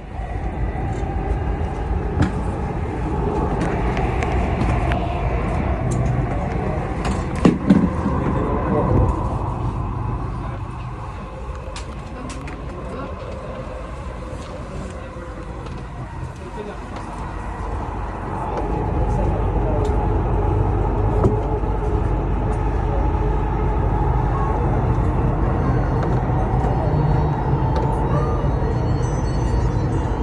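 Dubai Metro train running between stations, heard from inside the car: a steady rumble of wheels on rail with a faint motor whine, and a few short knocks about a quarter of the way in. The rumble grows louder a little past halfway.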